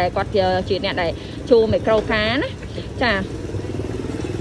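A person's voice talking in short phrases, over a steady low drone.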